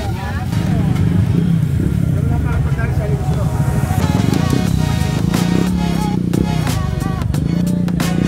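Busy street ambience: music and voices over a steady low rumble, with sharp clicks or clatter in the second half.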